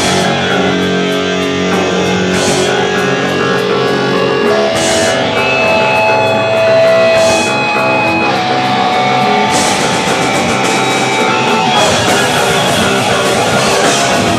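Hardcore punk band playing live, loud, with distorted electric guitar leading. Notes are held through the middle of the passage.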